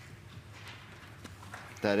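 Faint footsteps of a person walking to a speaker's rostrum, a few soft steps. A voice starts speaking near the end.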